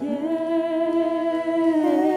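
Women's voices singing one long held note in a worship song, over soft band accompaniment; the note steps up slightly near the end.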